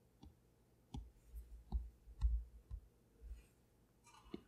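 Apple Pencil tip tapping on an iPad Pro's glass screen: about five light clicks, some with a low thud under them.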